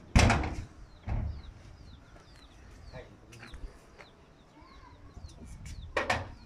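A metal door slams shut with a loud bang, followed by a second, smaller knock about a second later. Birds then chirp faintly with short, repeated downward-sweeping chirps.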